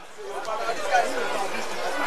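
Background chatter of several overlapping voices, rising about half a second in and then holding steady, with no single voice standing out.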